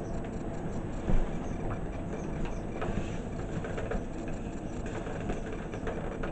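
Burning dress fabric crackling and ticking as it burns, with one louder pop about a second in, over a steady low rumble.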